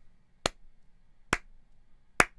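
Two sharp single hand claps about a second apart, made as a clap sync: a marker for lining up two audio recordings of the same microphone.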